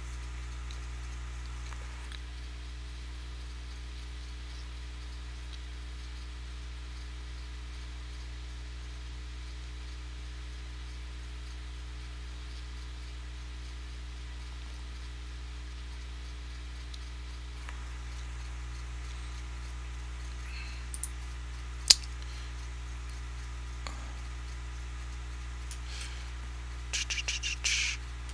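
Steady low hum of background room noise, with a single sharp click about 22 seconds in and a quick run of computer mouse clicks near the end.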